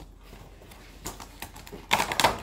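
Faint handling sounds of a toy figure and its plastic packaging: quiet rustles and a few light clicks, with a sharper cluster of clicks near the end.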